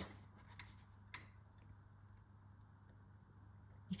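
Near silence: room tone with a low steady hum and a few faint small clicks, the clearest about a second in.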